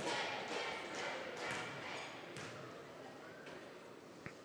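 A basketball is dribbled a few times on a gym's hardwood floor by a free-throw shooter, about a second apart, over crowd noise that dies away.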